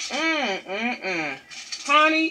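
A woman's voice, in short stretches with rising and falling pitch and a brief pause about one and a half seconds in.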